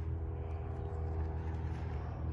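A steady, low motor hum with a constant pitch.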